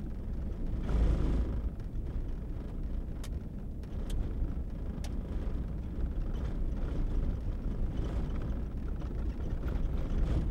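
Car being driven, heard from inside the cabin: a steady low rumble of engine and road noise that swells about a second in.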